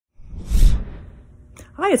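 A short, loud whoosh that swells and dies away within about a second, followed by a woman starting to speak near the end.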